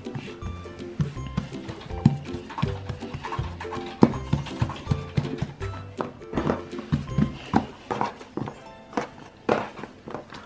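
Background music: held notes that change every half-second or so, over many light percussive knocks.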